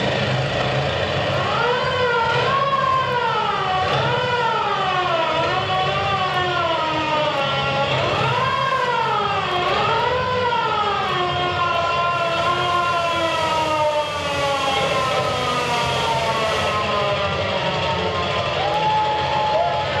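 A continuous siren-like wailing tone that slowly swoops up and down in pitch, winding gradually lower over about sixteen seconds, with a steady held tone joining near the end.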